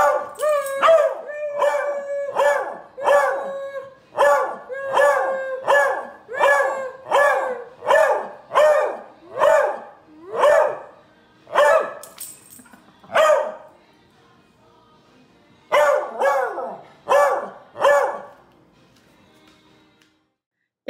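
Miniature beagle barking over and over, about one bark a second, some barks drawn out. After a pause of about two seconds, four more barks come near the end.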